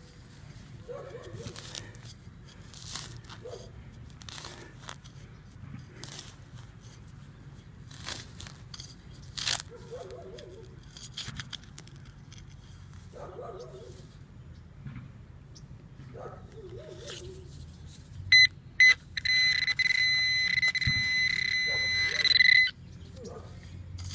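Digging knife cutting and scraping through lawn turf and soil in irregular clicks and scrapes. About 18 seconds in, a metal-detecting pinpointer gives two short beeps and then a steady buzzing electronic tone for about three seconds before cutting off, signalling metal in the hole.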